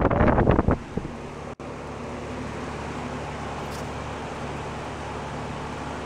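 Rheem air-conditioner condenser running with a steady hum from its outdoor fan; the compressor is muffled by a sound blanket. Brief clattering in the first second.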